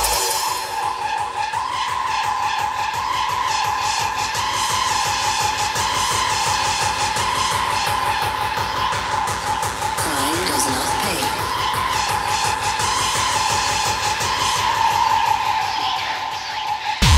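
Breakdown in a hardcore techno track: the kick drum drops out, leaving a sustained shrill synth tone held at one pitch over a wash of rapid ticking noise, with a brief wavering glide about ten seconds in.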